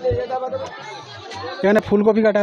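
Several people chattering at once, with one voice louder near the end.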